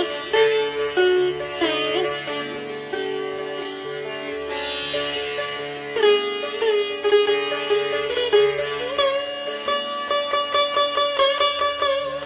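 Sitar playing the alaap of Raag Bhatiyar: single plucked notes bent up and down in pitch, giving way to quicker, evenly repeated strokes in the last couple of seconds.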